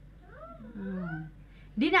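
A cat meowing once, a single drawn-out call that wavers up and down in pitch, followed near the end by a woman starting to speak.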